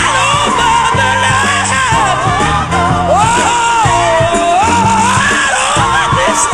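Black gospel song: a female lead voice sings long, sliding, shouted lines with instrumental backing.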